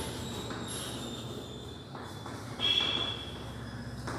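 Chalk scratching and squeaking on a blackboard as a label is written, with a louder high squeal about two and a half seconds in.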